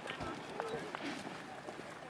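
Hoofbeats of a horse cantering on a sand arena, with faint voices in the background.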